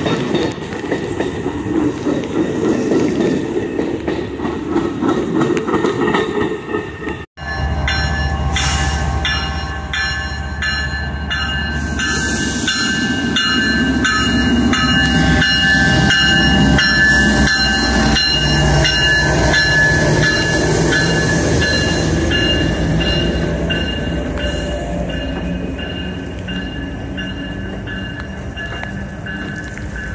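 Amtrak passenger train rolling slowly past at close range, its coaches' wheels clicking over the rail joints. After a cut about 7 seconds in, the CSX diesel locomotive leading it rumbles deeply alongside, with a steady high whine that runs on to the end.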